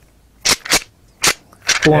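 A man making three sharp clicks, imitating the clicking of a climbing tree stand being worked up a tree.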